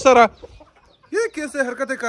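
Rooster clucking, a run of short calls starting about a second in.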